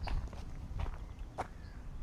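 A person's footsteps through grass, about four steps in two seconds.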